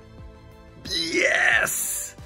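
Background music with a steady beat, then about a second in a man lets out a long excited cry, rising and falling in pitch, much louder than the music.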